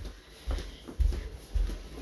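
Footsteps on a hardwood floor, heard as low thumps at about two steps a second.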